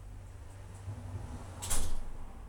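A door being pulled or slid open: one short, loud scrape a little over one and a half seconds in, over a low rumble.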